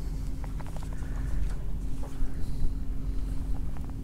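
Steady low hum and rumble aboard a small fishing boat, with a few faint light knocks.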